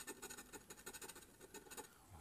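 Faint scratching: a scraper rubbing the silver coating off a scratch-off lottery ticket in quick little strokes.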